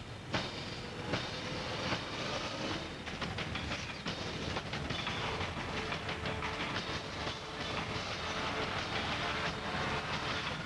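Film sound effects of a train wreck: continuous crashing and rumbling of metal with many sharp impacts, and a faint steady screech in the second half as steel girders collapse in an explosion.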